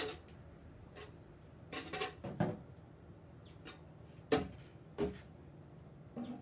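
A few scattered knocks and clunks as a painted wooden cutout is handled and set down on a plastic folding table. The loudest knock comes a little past four seconds in.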